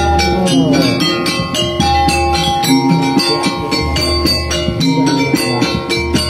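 Live Banjar kuda gepang ensemble playing: mallet-struck metal percussion rings out in a fast, steady pattern over sustained metallic tones, with a deep low note sounding about every two seconds.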